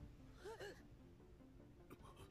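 Near silence, broken about half a second in by two quick, soft vocal sounds, each rising and falling in pitch.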